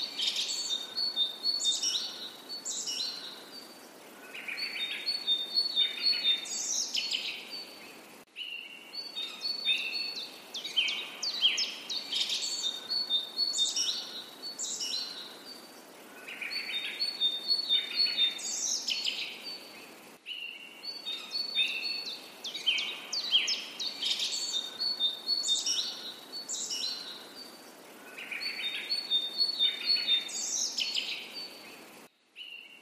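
Birds chirping and trilling, a recorded loop that repeats about every twelve seconds.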